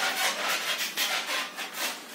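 Rhythmic rasping, scraping strokes, about three or four a second, like something being rubbed or sawn back and forth.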